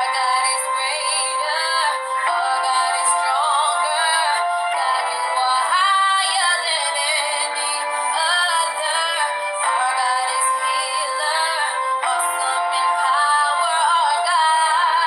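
A girl singing while playing sustained chords on an electronic keyboard, the chords changing every few seconds.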